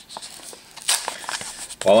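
Small cardboard blind box handled in the fingers and its flap worked open: scattered soft rustles and light clicks, with one sharper scrape of card about a second in.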